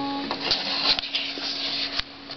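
The last chord of an acoustic guitar dying away, with one low note ringing on. From about half a second in, paper rustles as it is handled close to the microphone, with a few light clicks.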